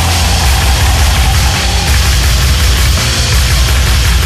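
Loud black/death metal music: a dense wall of distorted guitars and drums with a heavy low end, running steadily.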